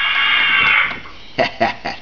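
A door-opening sound effect from an added sound chip, played through a speaker as the DeLorean's gullwing door swings up: a hissing sound that stops about a second in.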